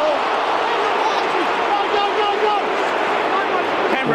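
Large stadium crowd shouting steadily, many voices at once, with a voice calling "go" about halfway through.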